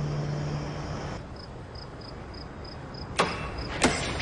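A held low note from the music fades out, leaving a low steady background hum. A faint, high-pitched chirp repeats about three times a second, and two sharp clicks come near the end.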